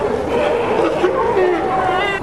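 A crowded herd of California sea lions barking over one another in a steady din of overlapping calls.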